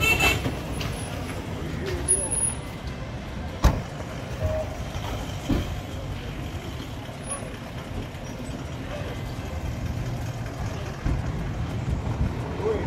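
SUV engine running steadily at a low idle among parked vehicles, with a single sharp knock about three and a half seconds in.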